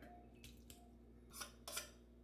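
Near silence, broken about a second and a half in by two short scrapes of a metal spoon scooping tuna out of the can into a ceramic bowl.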